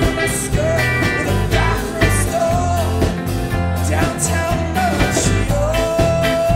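Live rock band playing: a male voice singing long held notes over strummed acoustic guitar, bass guitar and drums with cymbal hits.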